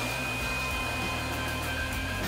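Handheld electric blower running steadily, blowing air through a clear plastic tube, with a single high motor whine held at one pitch over the rush of air.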